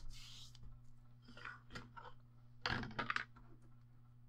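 Sheet of lightweight copy paper being folded and smoothed, and thin deco foil handled: faint rustling, with a short louder crinkle about three seconds in.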